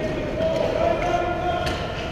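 Voices calling and shouting in a large, echoing ice arena during a youth hockey game, held high-pitched calls rather than clear words. A single sharp knock comes near the end.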